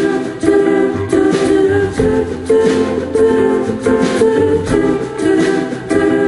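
Live band playing an instrumental passage: guitar chords over piano in a steady, even rhythm, with no lead vocal.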